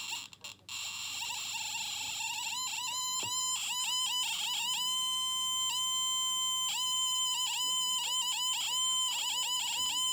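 Trifield TF2 EMF meter's speaker in RF mode, sounding off beside a phone streaming over cellular data. A hiss comes first, then a repeating buzzy tone in short pulses, many dipping in pitch as they end. The sound signals a strong RF reading that is pushing the meter off-scale.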